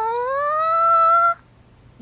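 A single sung note from one voice, sliding smoothly upward in pitch for about a second and a half, then breaking off abruptly.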